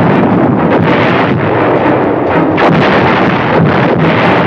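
Artillery fire: large guns firing in a barrage, several sharp blasts in quick succession over a continuous din of battle noise.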